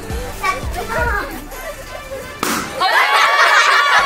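A balloon bursting with a single sharp pop about two and a half seconds in, followed by loud excited shouts and cheers.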